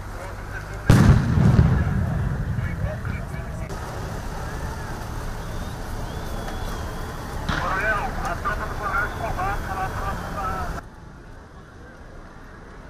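A sudden loud bang about a second in, like a blast, with a low rumbling tail, followed by outdoor street noise; later, several voices shout and call out until the sound cuts off shortly before the end.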